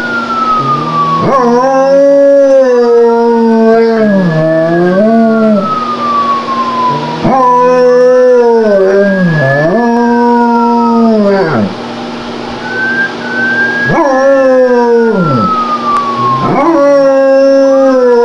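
German Shepherd howling in long, wavering howls, four in a row, along with a police siren wailing slowly up and down in pitch.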